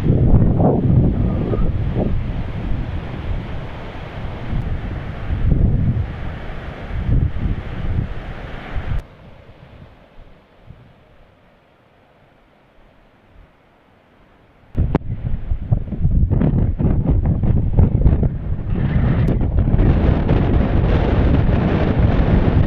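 Wind buffeting the AKASO Brave 7 action camera's microphone in loud, gusting rumbles. It drops to a faint hiss for about five seconds in the middle, then comes back just as loud.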